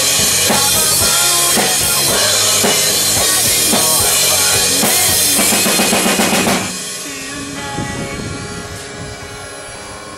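An acoustic drum kit played hard along with a recorded pop-punk song, with bass drum, snare and crashing cymbals over guitars. About six and a half seconds in, the loud full mix drops away to a much quieter, sparser passage.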